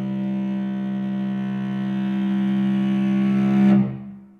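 String quartet holding a loud, low sustained chord that swells slightly and is cut off sharply near the end, leaving a brief ring in the room.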